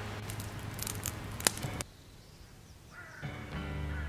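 Campfire crackling, with one sharp pop about one and a half seconds in. The sound cuts off abruptly. After a short quiet, music over a low hum starts near the end.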